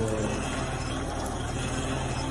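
Cream separator running with a steady, even hum while milk streams from its spouts.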